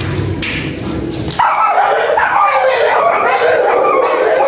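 Kennel dogs barking and yipping excitedly, a dense, loud, overlapping run of calls. Before it, a low steady hum cuts off abruptly about a second and a half in.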